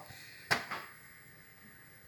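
A single sharp click about half a second in, with a fainter one just after it, over quiet room tone.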